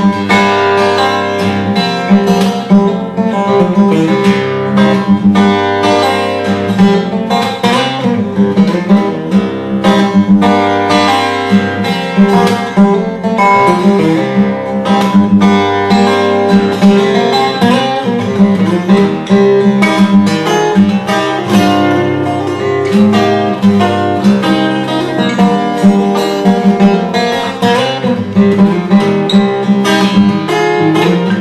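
Solo cutaway acoustic guitar played fingerstyle: a snappy, fast-moving piece of dense plucked notes over a steady bass line.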